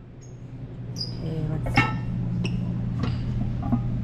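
Steady low hum of room ventilation with a few light clicks and knocks, the sharpest about two seconds in, and faint voices in the background.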